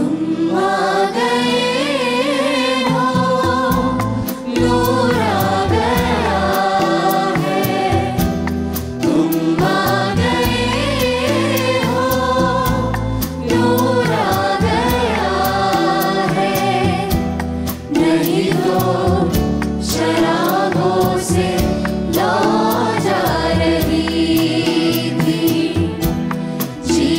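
A group of voices singing a song together into microphones over live backing music with a steady beat.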